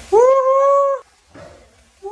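A young woman screaming in surprise: one long, high, steady shriek of about a second, and a second one starting just at the end.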